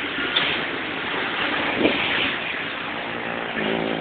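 Steady rush of road traffic, an even noise with no single engine standing out.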